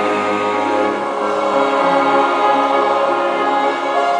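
Mixed choir of men's and women's voices singing sacred choral music in held, sustained chords.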